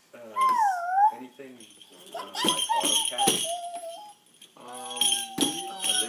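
A toddler's high voice calling out in sliding, sing-song tones in three spells, over the jingle of small bells on a toy shaker and a few sharp taps on a toy drum.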